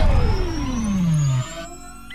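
Synthesized intro sound effect: a deep boom with an electronic tone that glides steadily downward over about a second and a half, then the sound drops quieter.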